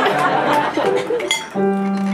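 Piano accompaniment playing held chords, with a brief glassy clink a little past the middle and voices underneath.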